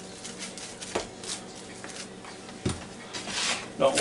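A seasoning shaker shaken over raw chicken wings in a bowl: a series of light, quick rattling shakes as the seasoning is sprinkled on, with the wings shuffled about in the bowl and a couple of soft knocks.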